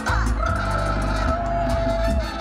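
Live salsa band playing, with a single long high note held steady from about half a second in until near the end.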